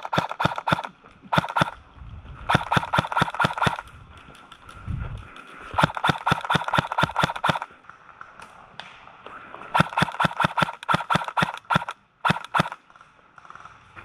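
Airsoft guns firing in rapid bursts of sharp clicking shots, several bursts with short pauses between them. A single dull thump comes about five seconds in.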